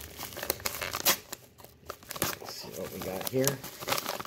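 Paper-faced bubble mailer crinkling and rustling as it is handled in the hands, in irregular sharp crackles.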